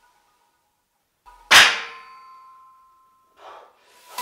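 A steel barbell loaded with cast-iron plates clanging once against the steel power rack, about a second and a half in, with a ringing tone that fades over about a second and a half. A short faint rustle follows near the end.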